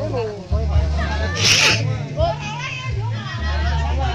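Several people's voices talking over background music with a strong, steady low bass. There is a short hiss about one and a half seconds in.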